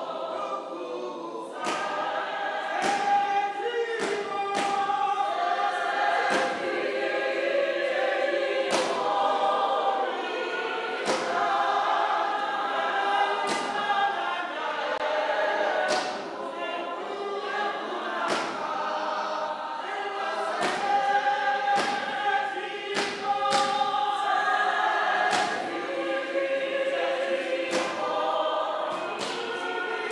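A congregation singing a hymn together in many voices, with sharp strikes keeping a beat roughly once a second.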